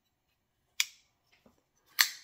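Kizer Sheepdog XL folding knife being worked so the blade drops shut on its own: two sharp metallic clicks from the blade and lock, one a little under a second in and another at the end, with a faint tick between them.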